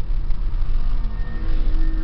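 Car interior noise while driving: a steady low rumble of road and engine, with a faint steady tone coming in about one and a half seconds in.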